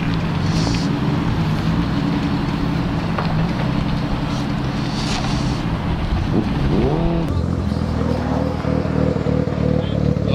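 Car engines idling close by in a steady drone; about seven seconds in, a choppier, pulsing idle takes over, one that draws "that idle though".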